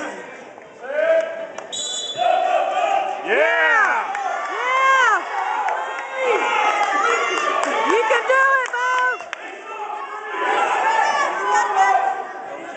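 Spectators at a wrestling match shouting encouragement, several voices yelling over one another in bursts.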